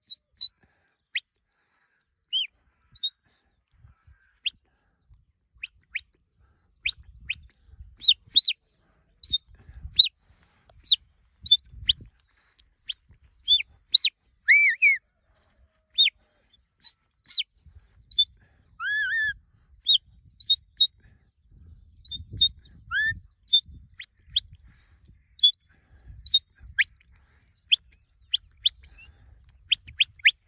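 Small birds chirping: a dense, irregular run of short, sharp high chirps and quick pitch sweeps, one to several a second, with an intermittent low rumble underneath from several seconds in.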